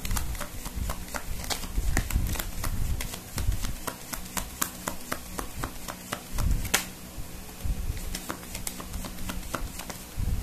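Tarot cards being shuffled and handled, a quick irregular run of soft clicks and flicks, several a second.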